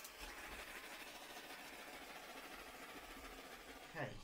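Faint steady hiss of room tone, with no distinct events.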